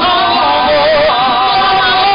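Live acoustic music: two acoustic guitars playing under a held, wavering melody line with vibrato.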